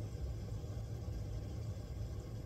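A steady low hum with a faint even hiss, as of equipment running in the background.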